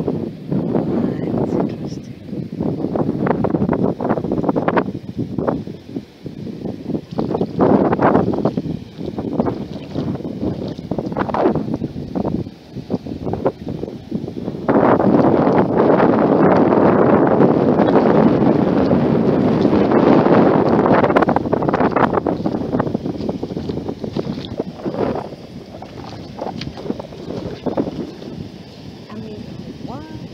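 Wind buffeting the microphone in gusts, with a long, loud gust starting about halfway in and lasting several seconds.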